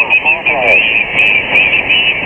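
Single-sideband voice heard through a Kenwood TS-590 HF receiver on the 40 m band: a station answering a call, garbled, with band hiss and other weak signals mixed in. The voice is clearest near the start.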